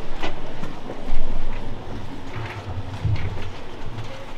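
Audience murmuring and shifting in a full auditorium before the show, with a low rumble that swells in the second half and scattered small knocks and rustles.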